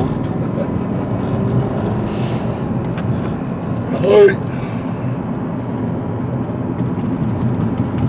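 Steady low rumble of a car's engine and road noise heard from inside the cabin while driving. A short hiss comes about two seconds in, and a brief vocal sound about four seconds in.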